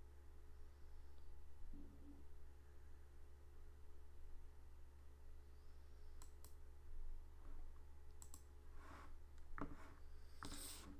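Faint clicking at a computer desk: a couple of clicks about six seconds in, two more around eight seconds, and a few near the end, over a steady low electrical hum.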